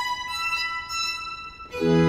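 Baroque violins on period instruments playing sustained high notes with no bass beneath them. Near the end, after a brief dip, the full string ensemble enters louder, with cello and double bass underneath.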